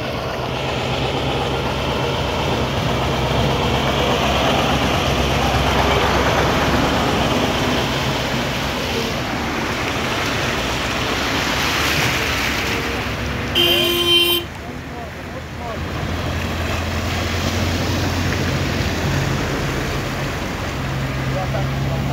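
Vehicle engines running low and steady as a lorry and a car drive slowly through floodwater, with water sloshing around them. A short car horn toot sounds about two-thirds of the way through and is the loudest sound.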